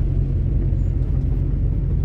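Steady low rumble of a truck's diesel engine and road noise, heard from inside the cab while driving at an even pace.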